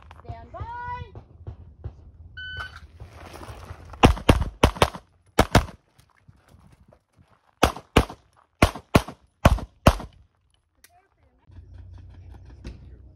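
A shot timer's short electronic beep, then a Sig Sauer P320 XFIVE Legion pistol fired in fast strings. About four seconds after the beep come four quick shots and a pair, then after a pause about seven more, roughly two to three a second.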